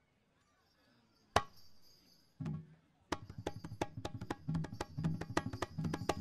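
Balinese gamelan percussion starting up after a brief hush. A single sharp strike comes about a second in, then a low drum stroke. From about three seconds in there is a fast run of sharp clacking strikes over drum beats.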